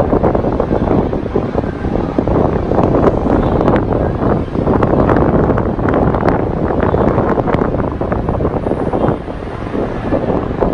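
Wind buffeting the microphone, a loud rough rumble that gusts and eases a little near the end, over a steady rumble of distant traffic.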